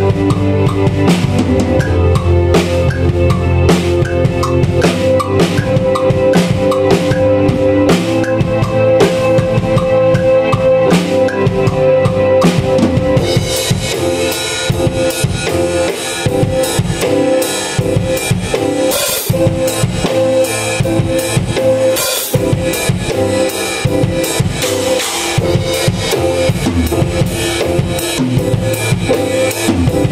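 Pearl drum kit played in a live jam, with bass drum and snare strokes over a keyboard's held notes. About halfway through, the cymbals come in busier and brighter.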